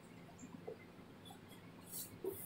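Faint squeaks of a marker pen writing on a whiteboard, a few short chirps about half a second in, over quiet room tone.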